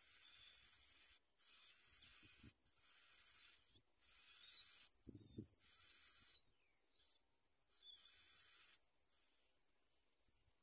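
Bar-winged prinia nestlings begging for food: a run of harsh, high hissing calls, each lasting up to about a second, about six in all with short gaps between, and a few faint thin chirps near the middle.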